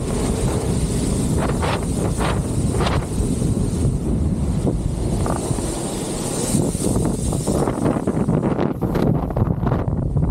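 Wind buffeting the microphone and the low rumble of a kite buggy's wheels rolling over hard-packed sand, steady throughout, with a few brief rattles between about one and a half and three seconds in.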